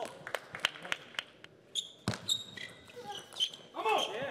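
Sharp clicks of a celluloid-type table tennis ball striking the table and paddles, with one louder click about two seconds in. Between about two and three and a half seconds, several short high squeaks of shoes on the court floor.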